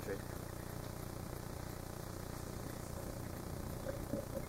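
Steady low hum with a faint even hiss underneath, unchanging and with no distinct sound events.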